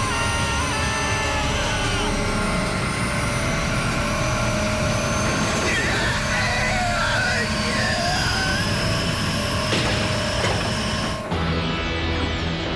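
Cartoon soundtrack: dramatic music layered over a dense, rushing energy-surge sound effect, with wavering pitched cries in the middle. The rush cuts off suddenly near the end.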